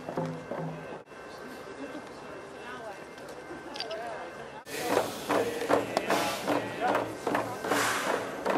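Hand drums beaten in a steady beat of about three strokes a second, with voices singing held notes. The sound breaks off about a second in, giving way to quieter crowd voices, then the drumming and singing return loudly a little past halfway.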